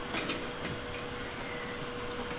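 Milk poured from a plastic gallon jug into a bowl of raw eggs, a faint splashing in the first half, over a steady hum.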